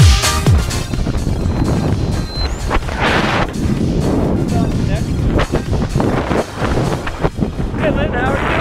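Electronic dance music with a steady kick drum ends about half a second in. It gives way to wind rushing over the camera microphone during tandem parachute canopy flight, with brief fragments of voices.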